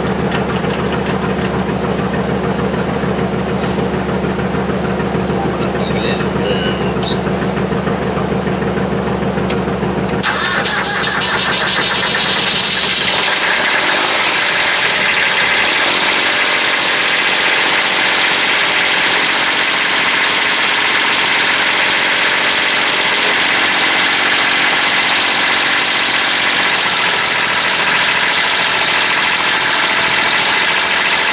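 A truck engine idling steadily, then about ten seconds in a small Kubota diesel tractor engine starts from cold after its glow plugs have been heated, louder than the truck and settling into a steady idle.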